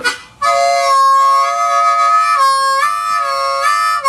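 C diatonic harmonica playing a bent four-hole draw with the five hole deliberately leaking in through the opened corner of the mouth, a gritty two-note 'slop' sound held for about three and a half seconds. It starts about half a second in, and the upper note drops out for a moment past the middle.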